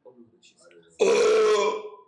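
A man's voice giving one loud, held vowel-like cry at a steady pitch. It starts about halfway through and lasts nearly a second.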